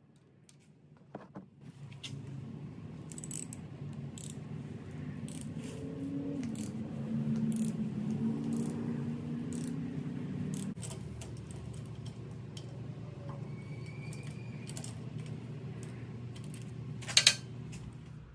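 Scattered metallic clicks and clinks from a hand ratchet turning a thread tap through a bolt hole in an excavator thumb's pin retaining cap, cutting the hole out to 5/8-inch fine thread. A steady low hum runs underneath, and two sharp clicks near the end are the loudest sounds.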